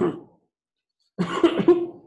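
A man coughing: a short, loud fit of coughs starting a little over a second in, after a brief pause.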